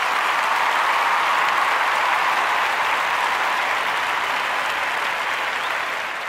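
Audience applauding, steady and even throughout.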